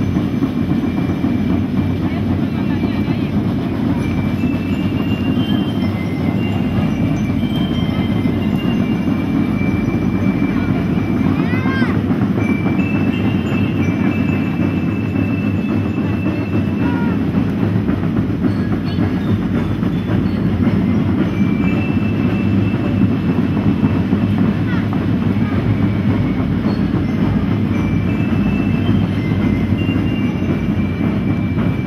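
Children's school drum band playing without a break, with dense, continuous drumming. Short high held notes sound over it at intervals.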